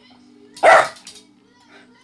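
A small dog barks once on the command "speak": a single short bark about two-thirds of a second in.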